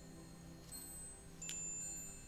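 Soft metal chimes ringing faintly over a gentle sustained music pad, with a fresh chime strike about one and a half seconds in.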